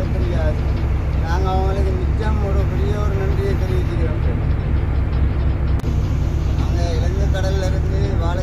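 A voice talking in short stretches over a loud, steady low rumble.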